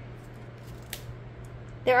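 Oracle cards of matte cardstock being handled and slid off the deck by hand: faint rustling with one sharp click about halfway through, over a steady low hum.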